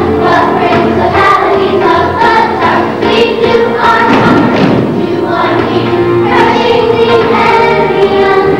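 A group of children and adults singing a song together over musical accompaniment.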